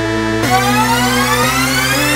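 Electronic music: held synth chords, with a rising synth sweep building up from about half a second in.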